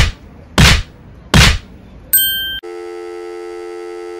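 Edited TV-static glitch sound effect: three short, loud bursts of static, then a brief high electronic beep about two seconds in, then a steady electronic test tone near the end.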